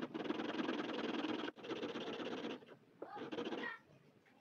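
Modified nail-buffer file rasping back and forth along a guitar fret wire, reshaping the worn fret back into a rounded crown. The rasp comes in two long strokes split by a sudden break after about a second and a half. It is followed near the end by a short sound with a rising pitch.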